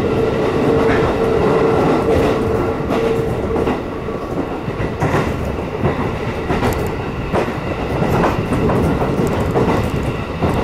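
Shin'etsu Line train running along the track, heard from inside the carriage: a steady rumble of wheels on rail. A steady hum ends about three and a half seconds in, and several clicks follow in the second half.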